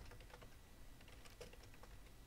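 Faint typing on a computer keyboard: a quick, irregular run of soft keystrokes.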